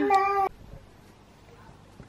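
A woman's voice drawing out one word in a sing-song tone, cut off abruptly about half a second in. After that there is only faint room tone.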